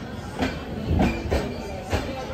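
Indian Railways sleeper-class coaches rolling slowly along a station platform: a low rumble with a few irregular wheel clacks, under a murmur of platform crowd voices.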